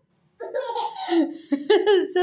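A four-month-old baby laughing: after a short pause, drawn-out, high-pitched voiced laughs start about half a second in and carry on with rising and falling pitch.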